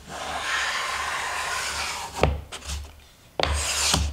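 Replaceable-blade Japanese hand plane (kanna) drawn along the edge of a board, taking a shaving. There is one long stroke of about two seconds, a knock, then a second, shorter stroke near the end. The blade, just set slightly further out, now cuts cleanly.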